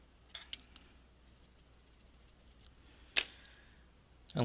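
Pencil and paper being handled on a wooden desk: a few light clicks near the start, then one sharp click a little after three seconds in, followed by a brief soft rustle.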